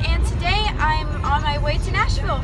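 A girl talking inside a car's cabin over the low, steady rumble of the car on the road.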